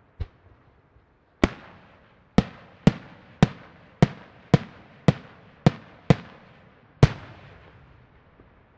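Aerial firework shells bursting: a small bang just after the start, then about ten sharp bangs in quick succession, roughly two a second, each fading away in a rolling echo.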